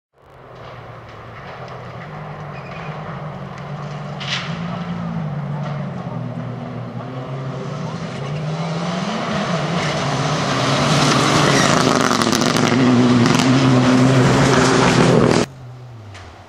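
Rally car engines running hard on a gravel stage, with some rises in pitch as they accelerate, growing steadily louder, with sharp crackles near the end, then cutting off suddenly about fifteen seconds in.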